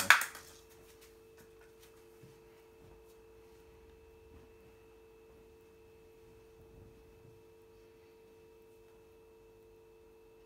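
A brief sharp knock at the very start, then a quiet room with a faint steady hum of two low tones and a thin higher whine.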